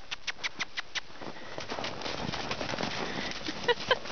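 Horses' hooves striking packed snow as they lope around the arena: a quick run of crisp footfalls in the first second, then scattered ones.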